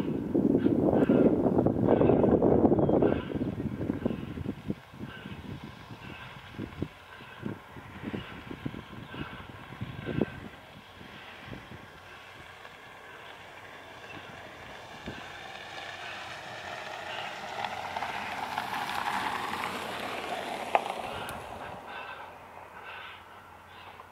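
A railway locomotive at work: a loud noisy burst for the first few seconds, then scattered clanks and knocks, then a steady sound that builds and is loudest near the end.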